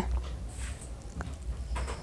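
Quiet background between spoken lines: a steady low hum with faint hiss, and one soft tick just past a second in.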